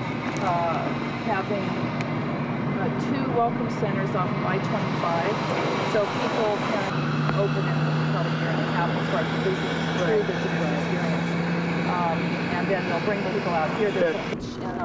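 People talking over a steady low engine hum, which holds one flat tone and grows stronger from about halfway through until near the end.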